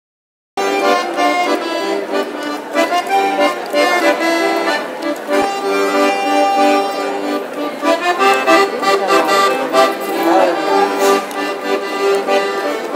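A G. Scandali piano accordion played solo: a melody over chords, with notes changing quickly. It starts abruptly about half a second in.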